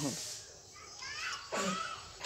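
Faint background voices of children at play, with a short call about one and a half seconds in.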